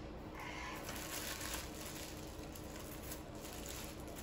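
Packaging rustling and crinkling as plastic wrap and foam inserts are handled inside a cardboard box, a run of small irregular crackles.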